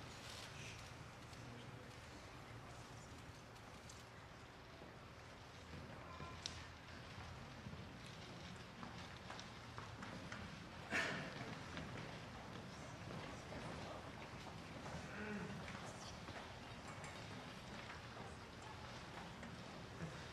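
Faint footsteps and shoe clicks of a choir stepping down from the stage risers, with quiet talk and one sharper knock about halfway through.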